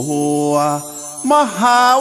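A Thai royal tribute song praising the king: a singer draws out long held notes with vibrato over musical accompaniment. The line breaks off briefly about a second in, and the next note starts with a bend in pitch.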